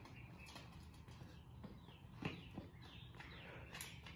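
Quiet outdoor background with faint bird chirps and a few soft taps of a child's sneakers running on concrete, the clearest about two seconds in.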